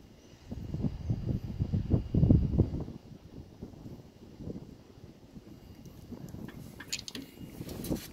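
Low, uneven rumbling on the microphone, strongest in the first three seconds, with a few faint clicks near the end.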